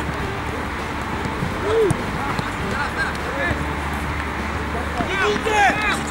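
Football players shouting and calling to each other during play, with a burst of loud, high shouts about five seconds in, over a steady low background hum.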